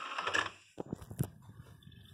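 LG DVD player's disc tray motor drawing the tray shut, stopping about half a second in. A few sharp clicks follow as the tray seats and the disc is clamped, then the disc spins up with a faint whir as the player loads it.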